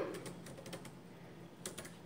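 Faint, irregular tapping of computer keyboard keys as a message is typed, with a few quick keystrokes together near the end.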